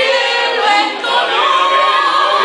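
Two women singing a duet together without instruments, their voices overlapping, ending on a long held note.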